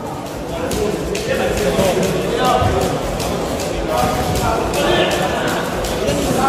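Voices of spectators and corners calling out in a large hall around a boxing ring, with frequent short slaps and knocks from punches and footwork in the ring.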